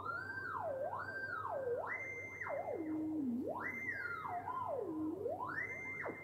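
Roland SP-555's D-Beam synthesizer playing a sine-wave tone, theremin-like, its pitch sweeping up and down about five times as a hand moves over the light sensor. The glides pause on held notes, because the pitch is locked to a scale and key.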